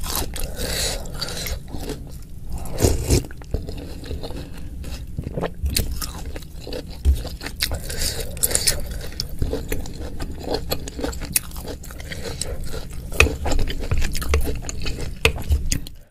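Close-miked eating sounds: chewing of chewy tapioca-starch meatballs (bakso aci), with a wooden spoon scraping and stirring through the broth in the bowl. There are many irregular wet clicks and crunches.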